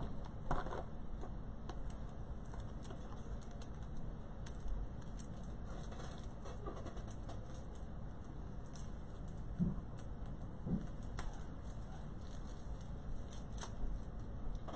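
Faint rustling and light clicks of craft ribbon being handled and unrolled, over a steady background hum. Two short, low sounds come about ten seconds in.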